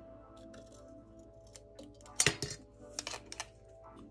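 Scissors cutting through a thin steel tape-measure blade: one sharp snip about two seconds in, then a few lighter metallic clicks, over soft background music.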